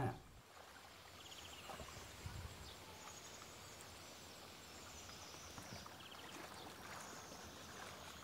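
Faint handling sounds of a screwdriver tightening a stainless worm-drive hose clamp onto black aeration tubing: a few short runs of rapid faint ticking over a faint steady background hiss.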